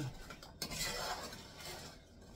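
A wooden spoon stirring carrots in melted butter and brown sugar in a small saucepan, clinking and scraping against the pan, with a small knock about half a second in.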